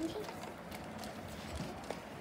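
A child's laugh trailing off at the start, then light handling of plastic toys on a hard floor: a few soft taps and one sharper click near the end.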